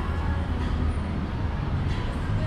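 Steady city street traffic noise, a continuous low rumble.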